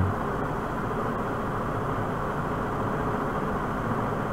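Steady background noise, a low hum with hiss, holding at an even level with no speech.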